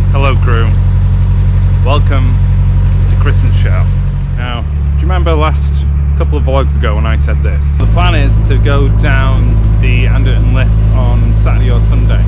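A narrowboat's engine running steadily under way, a loud low drone with a sudden shift in its tone about four seconds in and again near eight seconds.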